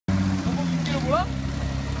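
Suzuki V6 engine in a tube-chassis rock crawler running steadily at a low idle, with a person's voice heard briefly about half a second to a second in.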